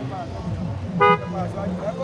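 A single short car horn toot about a second in, loud against the surrounding voices.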